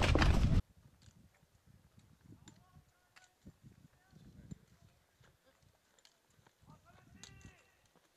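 Loud clatter of footsteps and trekking poles on rock, cut off abruptly under a second in. It gives way to faint open-air quiet with scattered small ticks and a few short, high, chirping calls.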